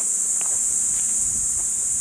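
Insects droning: one steady, high-pitched buzz that holds without a break.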